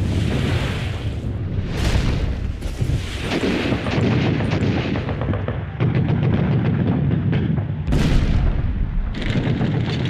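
Battle sounds: explosions and gunfire over a continuous low rumble, with a sharp blast about eight seconds in.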